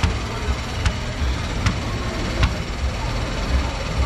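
Steady outdoor background noise with a fluctuating low rumble, broken by three short sharp clicks evenly spaced under a second apart.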